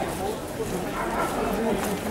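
Indistinct talk of people walking together in a group, with no clear words.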